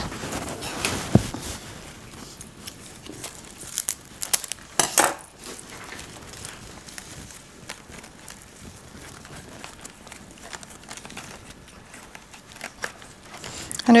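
Hands working a flower arrangement: rustling and crinkling of a woven straw band and greenery, with a few crisp short noises near the start and about five seconds in, as the band is cut with florist scissors and tucked into place.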